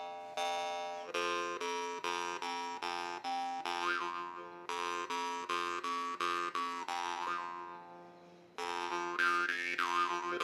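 A La Rosa marranzano (Sicilian jaw harp) being played: the steel reed is plucked in a steady rhythm, about two to three twangs a second, over a mid-range drone, with a melodic line of overtones shaped by the mouth. Near the end one twang is left to ring and fade before the plucking resumes.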